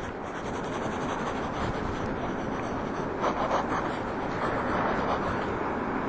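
Pencil scratching across sketchbook paper in continuous drawing strokes, a steady scratchy hiss with a few louder strokes a little past halfway.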